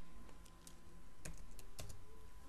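A few separate keystrokes on a computer keyboard, roughly half a second apart, as a stock ticker symbol is typed in.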